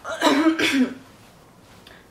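A woman's single voiced cough, lasting about a second.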